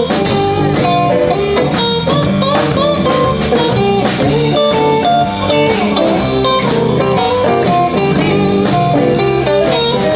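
Live blues band playing: electric guitars over a steady drum-kit beat, with a lead guitar line of bent, gliding notes and no singing.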